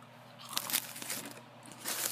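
Astronaut ice cream pouch crinkling as it is handled and folded, a run of short crackles starting about half a second in.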